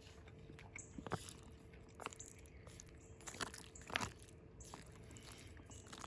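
A person chewing a spoonful of pork-and-barley MRE main: faint mouth sounds with a few soft clicks and smacks.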